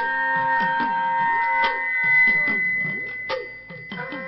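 Dhadd hourglass drums and a bowed sarangi playing an instrumental passage of Sikh dhadi music. The drum strokes slide down and back up in pitch while the sarangi holds long high notes. The music softens briefly near the end.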